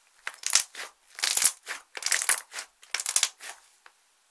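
Thick pink slime being pressed and kneaded by hand, giving a run of short crackling bursts, about three a second.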